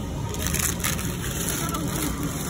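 Crinkling and crunching of plastic-wrapped frozen ice pops as a hand rummages through a chest freezer, with a couple of louder crackles in the first second, over a steady background din.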